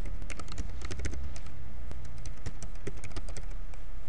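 Typing on a computer keyboard: quick, irregular key clicks over a low steady hum.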